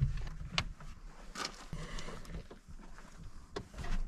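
Handling noises as foam cushions are laid onto a plywood bed platform inside a minivan: soft rustling with a few scattered light knocks.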